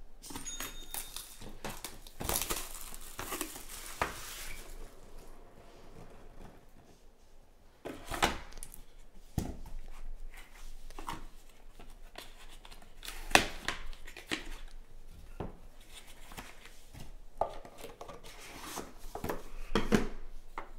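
Hands opening a sealed trading-card box: plastic wrap crinkling and tearing, then the cardboard box and cased cards handled, with scattered sharp taps and knocks, the loudest about two-thirds of the way through.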